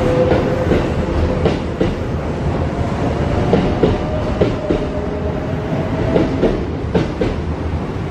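Kintetsu 1620 series electric train pulling out and passing close by as it gathers speed. Its wheels clack over the rail joints in quick pairs, several times over, above a steady running noise and whine.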